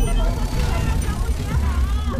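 A loud, deep rumble with fragments of voices over it, the pitch of the voices bending up and down near the end.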